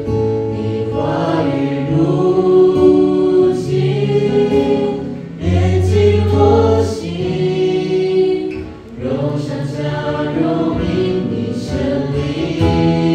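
A small group of young singers singing a Chinese Christian worship song together, one voice amplified through a handheld microphone, over sustained low accompaniment notes.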